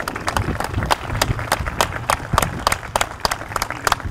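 Small crowd applauding, with separate hand claps at an irregular rate over a low rumble.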